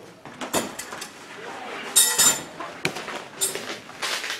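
A series of short clinks and knocks as moving straps with metal buckles are handled, the loudest cluster about two seconds in.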